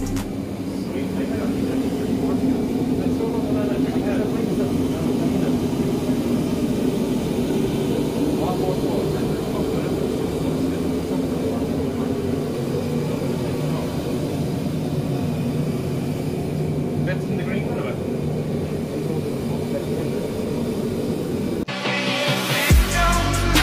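Steady low drone of workshop machinery running continuously, with faint voices in the background.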